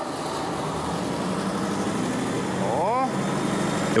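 Car engine idling steadily moments after a cold start, with a brief voice near the end.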